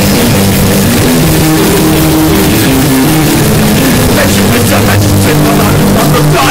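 Punk rock band's demo recording playing loud, with distorted electric guitar and bass holding low notes that change every half second or so.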